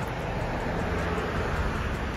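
Steady hiss and low rumble of road traffic, with wind on the microphone.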